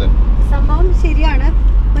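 Steady low rumble of a moving car heard from inside the cabin, with brief speech over it.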